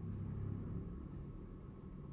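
Low, steady background rumble that gets slightly quieter over the two seconds.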